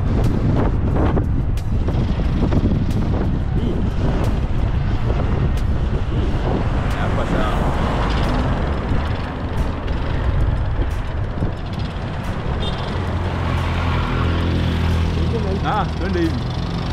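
Road traffic noise: cars and trucks running past on a busy road. A steady low engine drone comes in near the end.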